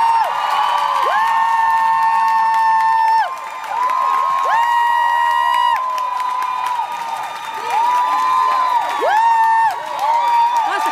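Voices singing a run of long, high held notes, each sliding up into the note and falling off at its end, with short gaps between, over a cheering concert crowd.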